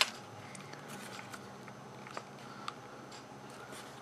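Handling noise of fingers working a 1.8-inch Toshiba laptop hard drive and its ribbon-cable connector: one sharp click at the start, then a few faint ticks and rubs.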